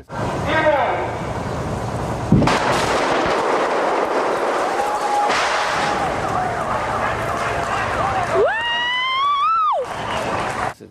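A film-set street explosion: a sharp blast about two and a half seconds in, then a long rushing roar of the blast. Near the end a rising wail comes in over it.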